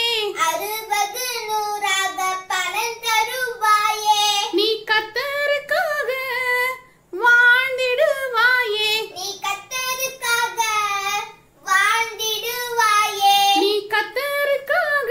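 A young girl singing alone with no instrument heard, the melody broken by short pauses for breath about seven and eleven and a half seconds in.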